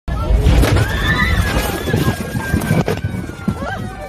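Passengers screaming and crying out in an airliner cabin shaken by severe turbulence, over a loud low rumble of the buffeting cabin. Sharp knocks come about half a second in and again near three seconds.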